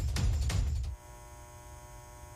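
A loud low rumble for about the first second, then a quieter steady electrical hum with a buzzy edge.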